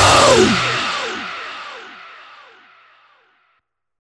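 The final moment of a heavy metal song: the band's full sound cuts off about a second in, leaving a falling-pitch sweep that repeats several times, each repeat fainter, dying away to silence at about three seconds.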